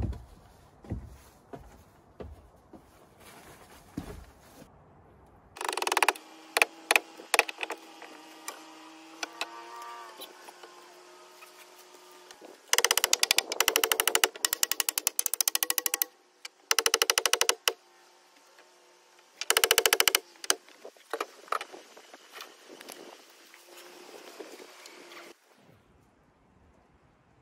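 Milwaukee cordless impact driver driving fasteners into wooden floor joists, its batteries running low. Low knocks and handling come first. About five seconds in, a steady motor whine runs for several seconds, rising slightly near the end. Then come three short bursts of rapid hammering clicks.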